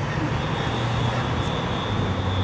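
Steady low engine rumble of traffic from the street below, with a faint steady high whine over it.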